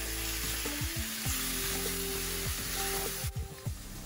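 Chopped fresh tomatoes sizzling in a hot stainless-steel sauté pan of oil, onions and spices as a spatula stirs them in. The sizzle cuts off suddenly a little over three seconds in.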